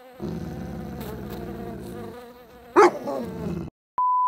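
Steady bee-buzz sound effect on the outro, with a single dog bark near three seconds in; both cut off just before the end.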